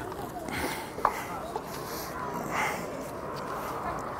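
Open-air background noise with faint, distant voices, and a single sharp click about a second in.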